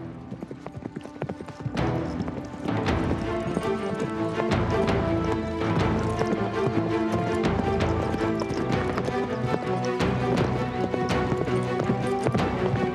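A horse galloping, its hoofbeats coming fast and close over grassy ground. Background music with held chords comes in about two seconds in and swells under the hoofbeats.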